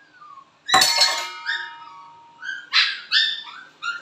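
Dog giving several short high-pitched whines and yips, eager for its food. A sharp clink about a second in, ringing on briefly.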